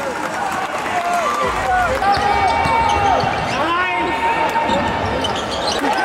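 Live basketball court sound: a ball bouncing on the hardwood and sneakers squeaking in short rising and falling chirps, with players' voices in the arena.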